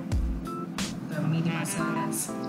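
Background music: a melodic track with held notes and a deep bass drum hit near the start.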